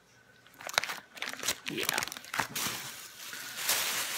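Plastic grocery packaging and bags crinkling and rustling as they are handled. It starts as scattered sharp crackles about half a second in and thickens into a continuous rustle over the second half.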